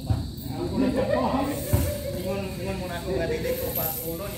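Men's voices talking and calling out, the words indistinct, with one dull thump about a second and a half in.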